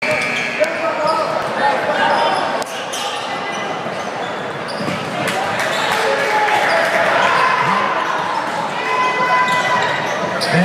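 Live basketball game sound in a gym: the ball bouncing on the hardwood floor, with short high sneaker squeaks and scattered voices from players and spectators.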